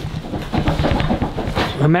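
A man's indistinct voice, quick and choppy, building into speech near the end.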